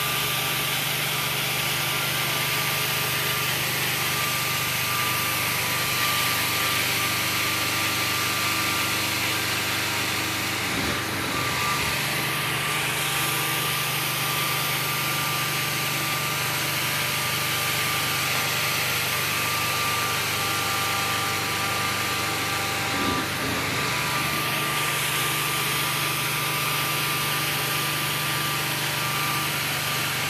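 Carpet-cleaning extraction machine running with its wand working the carpet: a steady hiss of spray and suction over a constant motor hum with a whining tone. The sound changes briefly twice, then settles back.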